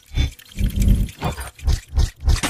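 Cinematic logo-reveal sound effects: a quick series of heavy mechanical clanks and clunks with a deep, growling low end, several in two seconds, as metal gear parts lock into place.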